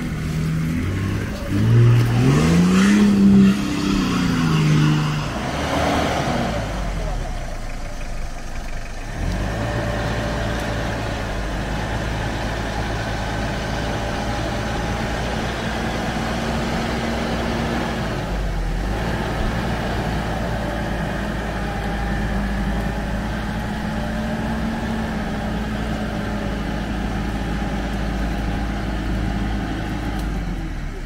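Off-road 4x4's engine revving up and falling back in the first few seconds, then running steadily at a constant pitch for the rest of the time.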